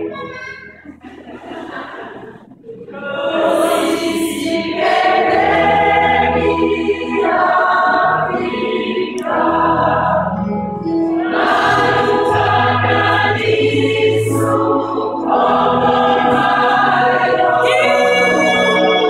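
Mostly female gospel choir singing. The voices are quieter for the first few seconds, then come in at full voice in long sustained phrases.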